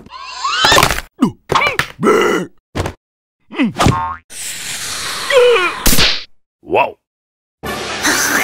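Cartoon sound effects and wordless character noises: a quick string of springy boings, whacks and short gliding squeaks and grunts, with a longer rushing noise about halfway through.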